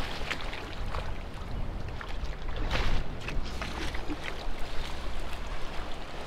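Shallow tide-pool water splashing and sloshing in short, scattered bursts as a hand net is swept through it, over a steady low rumble.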